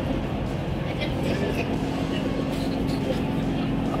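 Steady hum inside a passenger train carriage, with faint chatter from passengers. A low, even tone strengthens about a second in.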